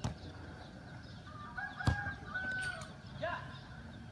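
Footballs kicked on a grass pitch: a light kick at the very start and a hard, sharp kick about two seconds in, the loudest sound. A bird calls in the background through the middle.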